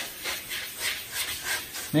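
Green Scotch-Brite abrasive pad scrubbed back and forth over a fiberglass paddleboard deck in quick, repeated strokes, a scratchy rubbing hiss. The deck is being scuffed to give the adhesive something to bite onto.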